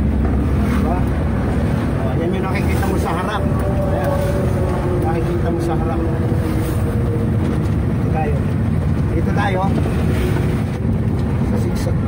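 Engine and road noise of a moving vehicle heard from inside its cab: a steady, loud low rumble.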